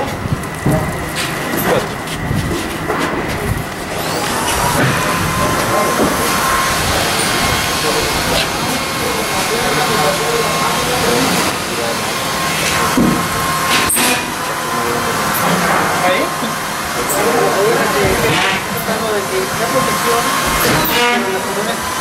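Steady machinery noise with faint steady tones in it, and indistinct voices over it, more in the second half.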